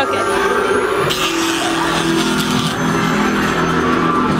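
Loud haunted-attraction soundtrack from the sound system: sustained low droning tones, with a burst of hiss starting about a second in and lasting under two seconds.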